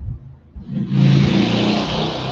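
A motor vehicle's engine swelling up about half a second in and then slowly fading.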